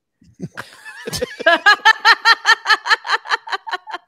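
A person laughing hard, a quick regular run of 'ha' pulses, about six a second, starting about a second and a half in. A short sharp knock just before it.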